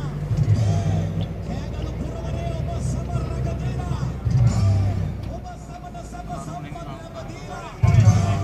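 A vehicle engine running steadily under street voices and music.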